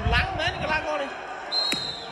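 A man speaking, then a short, high-pitched steady tone about one and a half seconds in, cut through by a sharp click.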